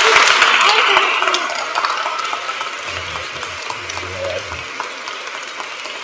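Audience applauding, loudest at the start and slowly fading.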